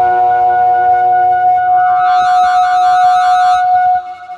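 Modular synthesizer holding one sustained note, with a fast wobbling high shimmer added about halfway through. The sound drops away sharply at the end.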